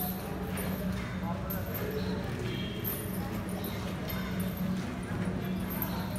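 People talking in the background over a steady low hum, with scattered short clicks and knocks.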